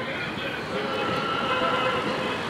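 Convoy of cars and vans driving past on a road, with engine and tyre noise and a steady held tone over it.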